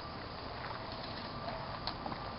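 Steady rustling of leaves and brush as people push through dense undergrowth, with a few faint snaps or clicks about a second apart.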